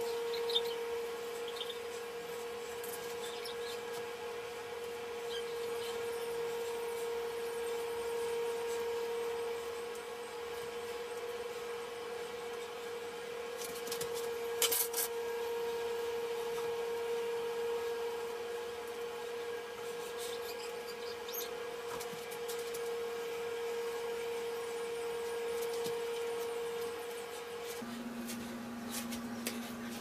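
A steady mid-pitched hum with faint rubbing and scattered light clicks as hands work hair into braids; a short cluster of louder ticks about halfway through.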